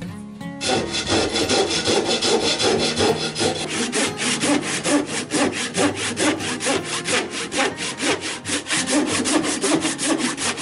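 A handsaw cutting through a maple board held in a vise, in fast, even back-and-forth strokes that begin about half a second in.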